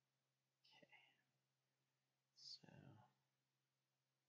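Near silence with two faint bits of a man's whispered, muttered speech: a short one about a second in and a slightly louder one between two and three seconds in that starts with a hiss.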